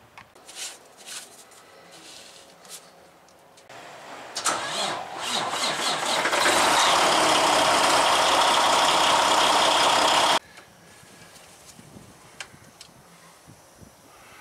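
A 2009 Volvo 780's D16 16-litre inline-six diesel engine starting about four seconds in and then running steadily at idle, so the fresh oil circulates after the oil change. It cuts off suddenly about ten seconds in.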